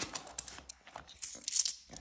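A plastic cash envelope crinkling as a handful of pound coins is taken out, with a series of sharp clicks of the coins against each other, most of them in the second half.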